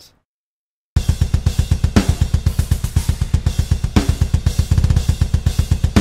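Programmed MIDI drums playing back through a sampled drum kit: after about a second of silence, a fast, steady kick-drum pattern starts with hi-hat and cymbals over it, and two heavier accent hits about two seconds apart.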